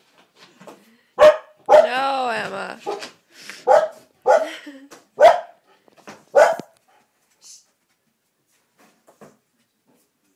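An animal calling loudly six times: five short, sharp calls and one longer call, about half a second after the first, that rises and falls in pitch. The calls stop after about six and a half seconds.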